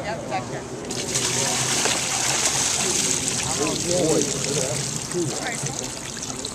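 Water pouring and trickling as live bass are emptied from a wet weigh bag into a perforated plastic basket and drained onto concrete, starting about a second in.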